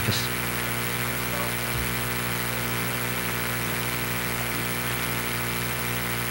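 Steady low electrical hum with a hiss over it.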